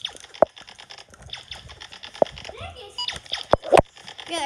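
Rustling and scraping handling noise from a phone being carried and jostled while its holder moves about. Several sharp clicks and knocks come through it: one about half a second in, one at about two seconds, and two close together near the end.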